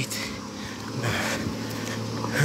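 A vehicle engine running with a steady low hum.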